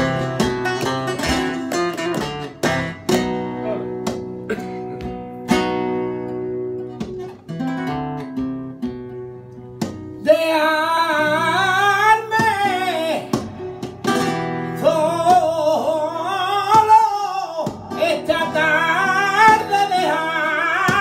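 Flamenco guitar playing bulerías por soleá, with plucked runs and strummed chords. About ten seconds in, a male flamenco singer enters with a wavering, heavily ornamented line over the guitar.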